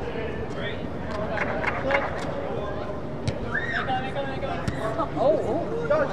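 Players' voices calling out across the pitch inside an air-supported sports dome, over a background of crowd chatter, with a few short sharp knocks in between.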